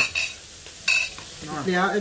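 Eating noises at a meal of hot rice noodles: two short noisy bursts about a second apart, then a man's voice begins near the end.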